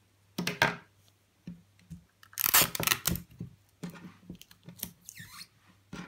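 Handling noises of jute twine and sticky tape on a tabletop, with a loud ripping scrape about halfway through as a strip of tape is pulled from a dispenser and torn off.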